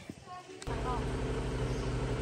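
Steady low hum of an engine running, starting abruptly about two-thirds of a second in, with faint voices over it.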